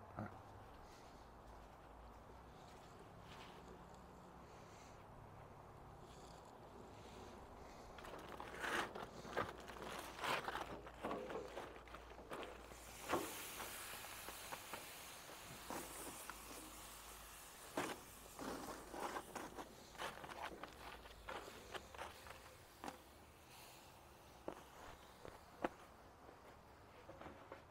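A quiet outdoor background for the first several seconds, then faint scattered clicks, knocks and rustles of a grill and its tools being handled a little way off, with footsteps.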